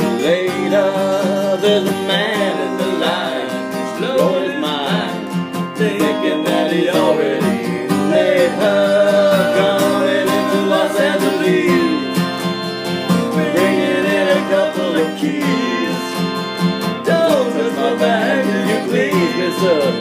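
Acoustic guitars strumming a country-folk tune at a steady tempo, with a lead melody line that bends and wavers in pitch over the chords.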